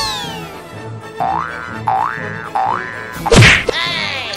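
Cartoon comedy sound effects over a music track with a steady beat: a falling whistle-like slide at the start, three quick springy boings, then a loud hit about three seconds in with a wobbling spring ring after it.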